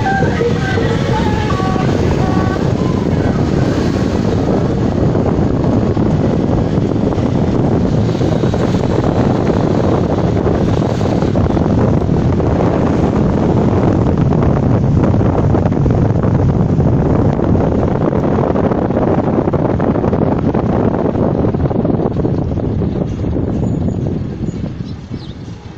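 Steady loud rush of wind on the microphone and road noise from a car driving along, with no letting up. Music with a steady pitched melody fades out in the first two seconds.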